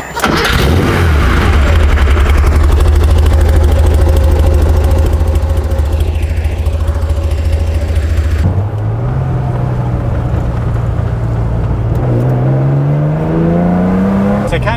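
Air-cooled Porsche 911 3.2 flat-six on 46 mm Weber IDA carburettors with SSI headers and a sports muffler, idling steadily just after starting. About eight seconds in, the sound changes to the engine heard from inside the cabin, and near the end its pitch rises steadily as the car accelerates.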